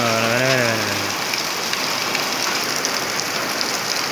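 Heavy rain pouring steadily onto flooded ground, with a man's voice trailing off in the first second.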